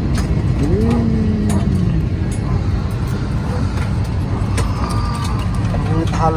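Steady low rumble of a jet airliner's cabin as the plane taxis after landing, with a brief gliding voice-like sound about a second in.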